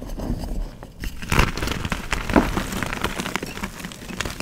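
Pressed gym-chalk donuts being crushed and crumbled by hand into loose chalk powder: a dense run of dry crackles and crunches, the loudest about one and a half and two and a half seconds in.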